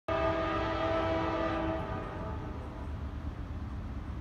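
Nathan K5LA five-chime air horn on the leading GE Dash 9 locomotive, a steady chord that stops about two seconds in and fades out, leaving a low rumble.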